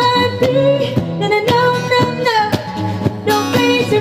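Live acoustic band: a woman sings long held notes over a strummed acoustic guitar and a steady beat slapped on a cajón.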